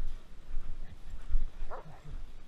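Footsteps crunching through snow at a steady walking pace, about two a second, with a brief high whine from a dog near the end.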